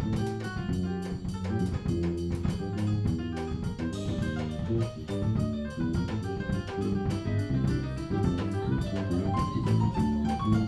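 Live instrumental jazz from a small combo: a drum kit keeping a steady, even beat under electric bass and Roland FP-4 digital piano.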